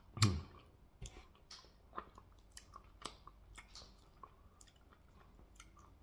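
Close-up mouth sounds of a person eating goat head meat and fufu by hand: one loud wet smack just after the start, then chewing with irregular wet clicks and lip smacks about twice a second.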